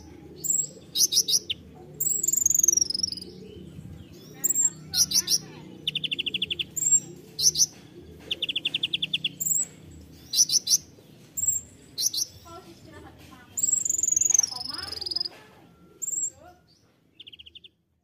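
Male Van Hasselt's sunbird (kolibri ninja, 'konin') singing: sharp high chirps, two quick buzzy trills, and a couple of longer falling whistles, in irregular phrases that thin out near the end.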